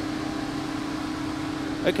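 A steady mechanical hum with one constant mid-pitched tone and an even background hiss, holding level throughout.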